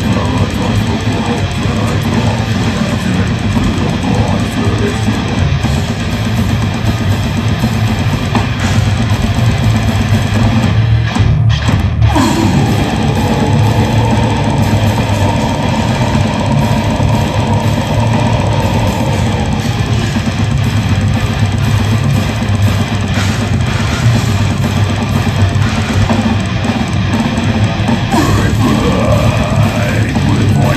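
Death metal band playing live at full volume: distorted electric guitars, bass and pounding drums. The band stops for a split second about eleven seconds in, then comes back in under a long held guitar line.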